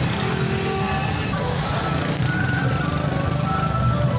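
Busy street traffic noise with vehicle engines running, and music playing over it, with a few short held tones partway through.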